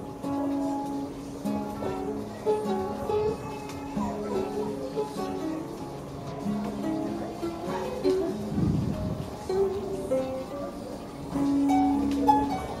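Acoustic guitar and ukulele playing a tune: held low notes under a run of single higher notes, with a brief low rumble about eight and a half seconds in.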